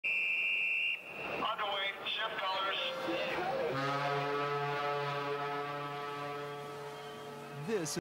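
Steam horn of the Iowa-class battleship USS Missouri (BB-63) giving one long, deep, steady blast of about four seconds, starting a little before halfway and sliding in pitch as it cuts off near the end. A high steady beep fills the first second, and voices follow before the horn.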